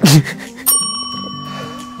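A loud, short vocal outburst, then about two-thirds of a second in a metal desk call bell is struck once to buzz in for a quiz answer, its clear ding ringing on and slowly fading.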